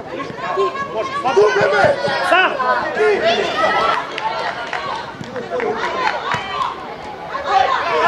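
Several voices talking and calling out over one another, as from coaches and spectators at the side of a football pitch, with no single clear word.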